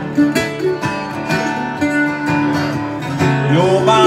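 Live acoustic guitar strumming, with a second guitar playing along, in an instrumental passage between sung lines.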